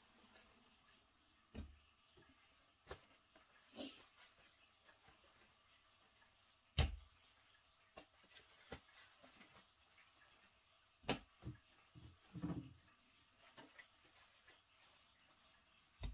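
Faint, sparse handling sounds of paper kitchen towels being pressed and rustled over raw mackerel fillets on a wooden cutting board to blot them dry, with several soft thumps on the board, the loudest about seven seconds in.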